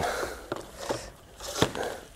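A few light knocks and clicks from handling the electric dirt bike's battery compartment and seat. The sharpest click comes about one and a half seconds in.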